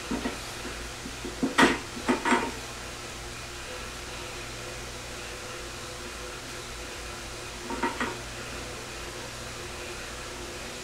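Hard plastic-and-metal clacks of an electric scooter's handlebar assembly being handled and worked off its metal stem tube. There is a loud clack about one and a half seconds in, two more just after, and a softer pair near the end, over a steady low hum.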